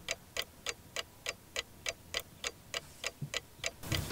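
Clock-style ticking of a quiz-show countdown timer, even and steady at about three to four ticks a second, marking the time allowed to answer.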